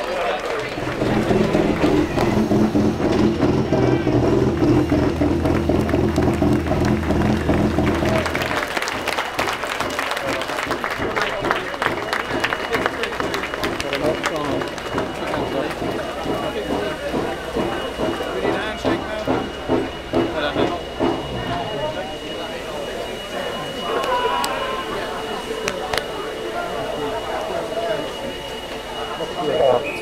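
A celebrating pit-lane crowd claps, cheers and talks over a touring car's engine, which runs steadily and cuts off about eight seconds in. After that come dense clapping and excited voices.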